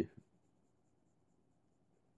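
A pause in a man's speech: the end of a word right at the start and a brief soft click just after, then near silence with only faint room noise.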